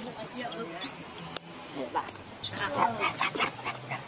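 A baby macaque squealing in a string of short cries that rise and fall, busiest in the second half, while an adult macaque grabs and pulls it. A single sharp click about a second and a half in.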